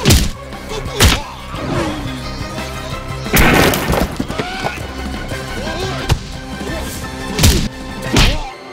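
Film fight-scene sound effects over loud action background music: sharp punch and kick hits about four times, and a longer crash about three and a half seconds in as a body lands on a table.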